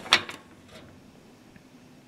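A single brief, light knock just after the start, from the metal toe kick panel being handled on a wooden workbench, followed by faint room tone.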